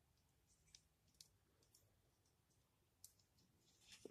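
Near silence broken by three faint clicks of plastic model-kit parts being handled and pressed together.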